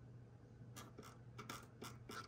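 Faint clicks of a computer mouse, about five in quick succession from roughly a second in, over a low steady hum.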